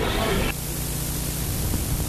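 Steady hiss with a faint low hum underneath: the background noise of an old analogue broadcast recording, with no speech over it.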